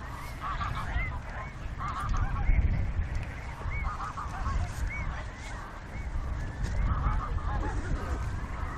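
Geese honking in repeated bursts, about every two seconds, among other short repeated bird calls, over a low steady rumble.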